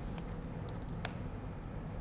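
Laptop keyboard typing: a few light key clicks, the sharpest about a second in, over a low steady room hum.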